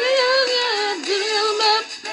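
A single voice singing high, held notes into a handheld microphone, sliding up and down between pitches.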